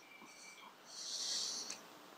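Quiet pause between phrases of a man's speech at a lectern microphone: faint room tone, with a soft hissing breath about a second in.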